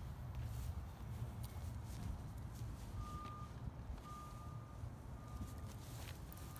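A vehicle's reversing alarm beeping, one steady tone repeating about once a second, starting about three seconds in, over a low steady rumble.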